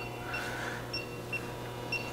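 Several short, faint, high electronic beeps at uneven intervals over a steady low hum.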